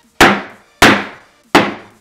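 Rubber mallet striking a gel-filled Stretch Armstrong toy on a tabletop: three hard blows about two-thirds of a second apart, each a sharp thwack that dies away quickly.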